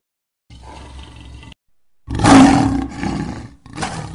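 A lion's roar, used as a sound effect: it comes in loud about two seconds in, is rough and drawn-out, and fades over about a second and a half. A quieter rush of noise comes before it, and a short further burst follows near the end.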